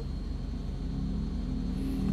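Car engine idling, a steady low hum heard from inside the closed cabin.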